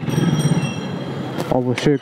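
Motorcycle running at low speed through a narrow street, a steady noisy rumble with a faint high whine over it. A short spoken word cuts in near the end.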